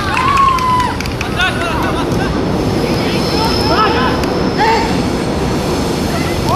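Players and onlookers shouting short calls over a steady background din on a football pitch, with a few sharp knocks about a second and a half and two seconds in.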